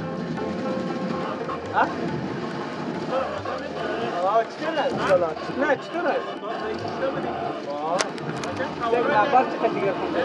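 Men talking to each other in Dari, with music playing under the conversation.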